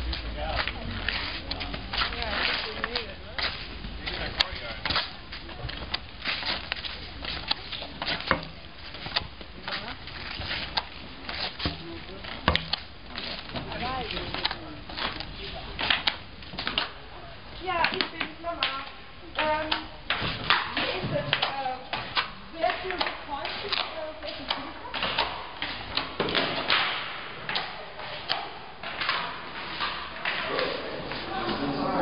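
Flat white boards under a man's shoes scraping and knocking on stone paving with each shuffling step, an irregular run of short scrapes.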